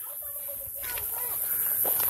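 Faint, distant speech.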